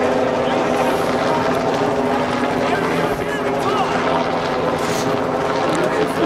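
Helicopter hovering overhead, a steady, unchanging hum over the scattered voices of a crowd.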